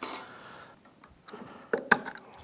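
Metal centrifugal-clutch parts handled on a wooden workbench: a short scrape as a plate is set down, then a few sharp metal clicks close together near the end.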